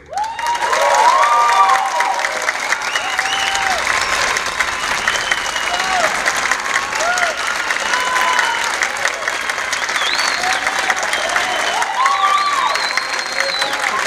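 An audience breaks into loud applause at a concert's end, clapping steadily throughout with whoops and cheers rising over the clapping.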